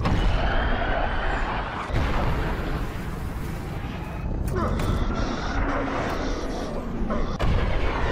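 Jet engine noise of F/A-18 fighters flying low and fast: a loud, dense rush with a deep rumble. It surges about two seconds in and again near the end.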